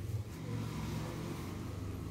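Low engine hum, as of a motor vehicle running close by, swelling in the first half second and then easing off slightly.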